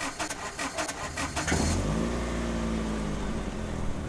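Car engine cranked by the starter for about a second and a half, then catching and settling into a steady idle: the stalled engine starting again after being worked on.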